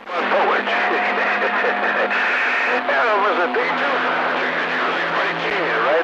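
CB radio receiver playing a strong incoming skip signal: garbled voices of distant stations through heavy static hiss, with steady whistling tones running under them.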